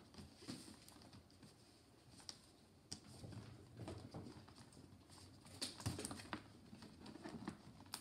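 Shiny wrapping paper rustling and crinkling, with scattered small clicks, as a gift is picked at and pulled open by hand. The rustling gets a little louder about two-thirds of the way through.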